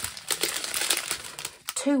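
Connected strip of small plastic bags of diamond-painting drills crinkling as it is handled: a dense run of fine crackles that stops shortly before the end.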